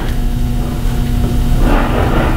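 Steady low rumble with a faint constant hum, with no speech. A soft breathy noise comes near the end.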